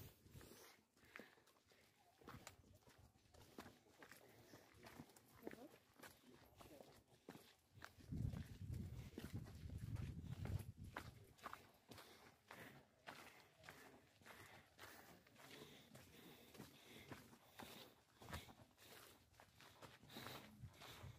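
Faint footsteps of hikers walking down a rocky dirt trail, an irregular run of short scuffs and clicks. A low rumble comes in from about eight to eleven seconds.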